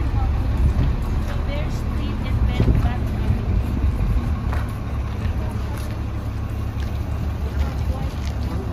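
Shuttle bus engine idling at the stop with its door open, a steady low rumble, while people talk close by.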